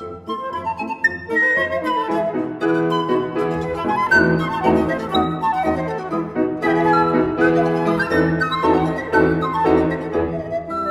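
Transverse flute and pan flute playing quick melodic lines together over piano accompaniment in a classical chamber piece.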